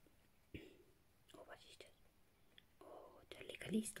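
Quiet, with soft whispered speech that grows near the end and a faint click about half a second in.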